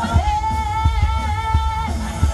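Live band amplified through a PA: a singer holds one long, steady note while the drums keep a regular beat underneath.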